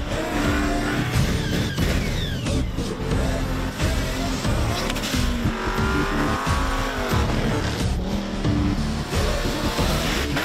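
Performance cars' engines revving hard with tyres squealing as the cars slide sideways on a wet race track, under background music.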